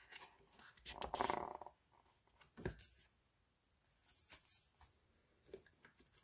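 Soft paper handling: pages of a glossy photo book riffled and turned, with a single dull knock about two and a half seconds in as the book is closed or set down on the table, then a light papery rustle.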